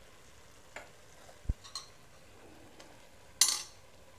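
Steel spoon stirring chicken and masala in an aluminium pressure cooker: a few light clicks and a soft knock against the pot, then one louder, brief scrape near the end.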